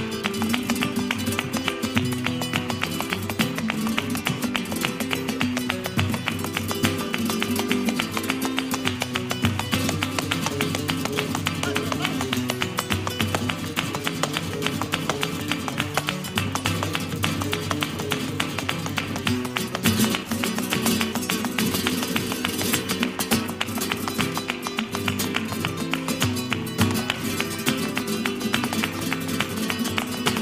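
Flamenco guitar playing, with a dense run of rapid sharp taps from a dancer's heeled shoes striking the floor in zapateado footwork.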